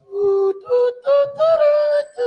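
Music with a sung melody: a few notes rising step by step, the last held for about half a second.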